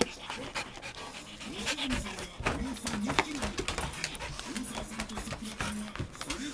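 Golden retrievers play-wrestling: panting, with short rising-and-falling vocal noises and scattered clicks and scuffs.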